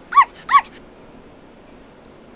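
A dog gives two short, high yelps in quick succession, each rising and falling in pitch.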